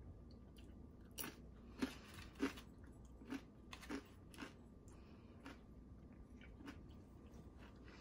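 A person chewing a crunchy tortilla chip, the One Chip Challenge chip, with faint mouth-close crunches. There are about ten irregular crunches, closer together at first and growing sparse after the middle.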